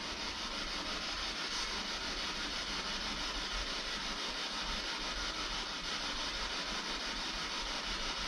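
Steady static hiss from a radio-scanning ghost-hunting device sweeping the bands, with only small flickers in level. It picks up no stations, just noise.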